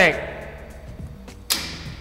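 A capacitor-bank impulse generator charged to 1,800 volts fires: a single sharp bang about one and a half seconds in, with a short ringing decay.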